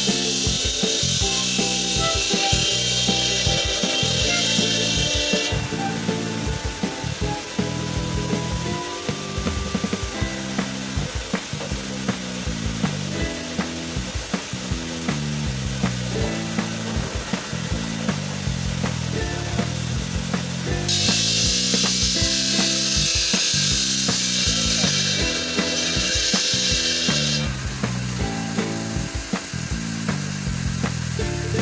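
Background music with a steady beat over a water-fed circular saw cutting marble slab. The blade's hiss comes in two spells of about six seconds, one at the start and one about two-thirds of the way in.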